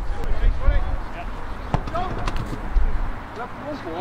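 Players' voices calling across an open football pitch, with a low wind rumble on the microphone that dies away about three seconds in. A couple of sharp knocks sound in the middle.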